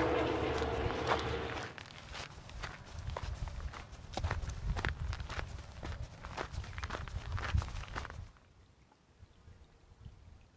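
Footsteps on a rocky dirt trail, irregular steps that stop about eight seconds in. During the first second or two, traffic noise from a nearby highway fades out.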